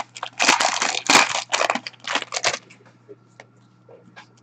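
Hockey card packaging being torn open and crumpled by hand: a quick run of short rips and crinkles over the first two and a half seconds, then faint handling.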